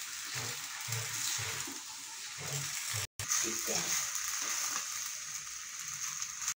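Chow mein noodles sizzling as they are stir-fried in a two-handled wok, with the scrape and stir of wooden sticks. The sizzle cuts out for a split second about halfway through.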